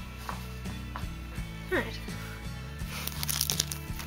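Background music, with clear plastic card packaging crinkling as it is handled about three seconds in.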